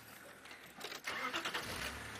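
Open safari game-drive vehicle driving off-road through the bush, its engine running under a noisy rush with rattling, louder from about a second in.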